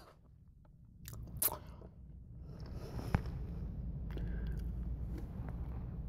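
Close-up chewing of a crispy fried chicken tender, with a few sharp crunches between one and one and a half seconds in. A low rumble builds underneath in the second half.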